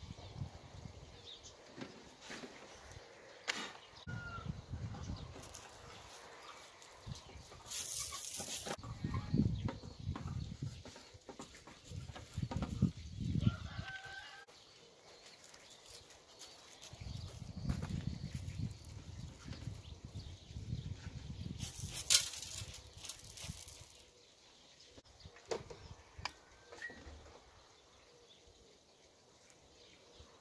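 Artificial turf and a wooden box being handled and fitted by hand, with rumbling gusts of wind on the microphone. Two short loud hisses and a few faint bird chirps come through.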